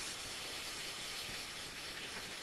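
A steady, even hiss with no other events.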